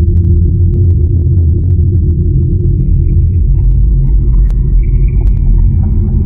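Loud, steady low rumble with faint scattered clicks, the sound of an animated film-countdown leader; a thin high tone joins about three seconds in.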